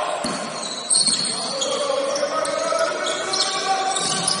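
Basketball bouncing on a wooden sports-hall floor during live play, a couple of sharp knocks among the general court noise, with players' voices calling out.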